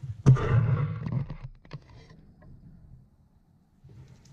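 Fabric rustling and being handled, with a sharp click near the start and a few light clicks just after, as the hoodie's chin guard is folded over the zipper end and clipped in place. It fades to quiet after about two seconds.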